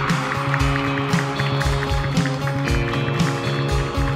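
Live band playing with electric guitar, bass and drum kit: sustained chords over a steady drum beat of about two hits a second, with cymbals.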